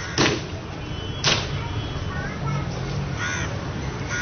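Crows cawing: two short harsh caws about a second apart, then another about three seconds in, over a steady low hum.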